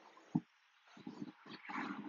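A man's faint breathing as he moves through a yoga sway: a short click about a third of a second in, then low, breathy exhales in the second half that grow toward the end.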